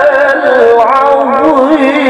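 A male qari reciting the Quran through a microphone in melodic tilawah style: one voice holding long notes with ornamented, wavering turns of pitch.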